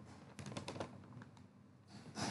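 Faint typing on a computer keyboard: a short run of quick light key clicks starting about half a second in and lasting about a second.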